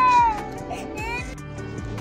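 Background song: a long, high sung note that glides down and ends about half a second in, over a steady accompaniment that carries on more quietly afterwards.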